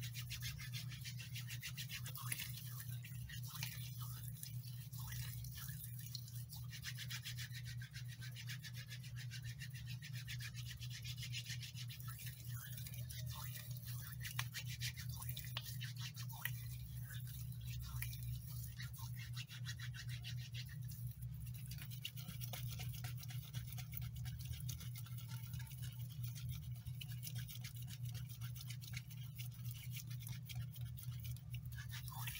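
Foamy lather squished and rubbed between two hands close to the microphone, giving a steady fine crackle of bursting bubbles.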